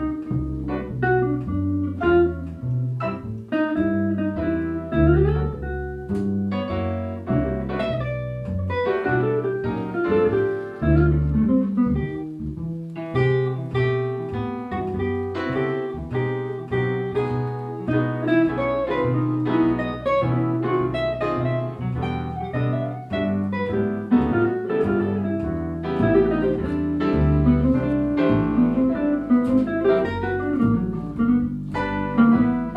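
Live small-group jazz with no vocal: an electric archtop guitar playing a single-note solo line over a walking double bass and piano chords, in a swing feel.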